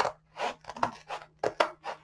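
Scissors snipping through the blank margin of a diamond painting canvas, several short cuts at an uneven pace.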